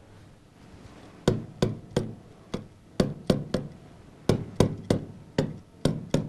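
Pen or stylus tapping on the glass of an interactive touchscreen display as marks and letters are written: about a dozen short, sharp taps at an uneven pace, two or three a second, starting about a second in.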